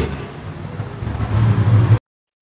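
A low, steady rumble that grows louder in the second half and cuts off abruptly at the end.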